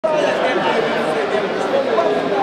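Many people talking at once: overlapping chatter of a group of voices, steady throughout, in a large indoor hall.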